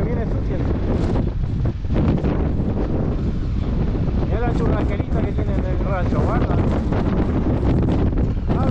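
Wind buffeting a motorcycle rider's camera microphone in a dense, steady rush, with the motorcycle's engine running beneath it.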